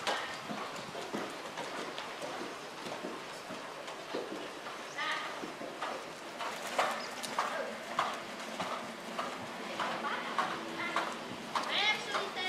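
Horses' hoofbeats on a sand riding arena, irregular dull knocks as horses move round under riders.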